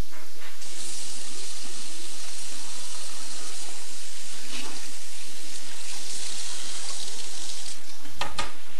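Bathroom tap running water into a sink: a steady hiss that starts just under a second in and stops shortly before the end.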